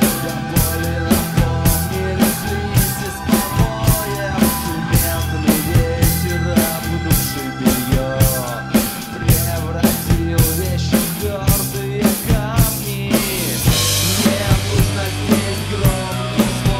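Rock drum kit played over the band's instrumental backing track, with no vocals: a steady kick-and-snare beat of about two to three hits a second with cymbals. About thirteen seconds in, a cymbal crash rings out for a second or so.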